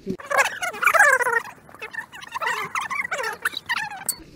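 A person making high-pitched, wordless squealing noises: one long falling squeal, then shorter broken ones.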